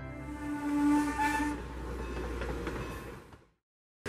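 Steam locomotive hauling passenger coaches past, its whistle sounding a steady chord for about the first second and a half over the train's running noise. The sound cuts off abruptly about three and a half seconds in.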